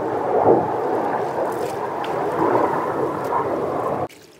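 Wet white clothes being sloshed and squeezed by hand in a plastic basin of water, a steady splashing noise with irregular swells that stops abruptly at the end.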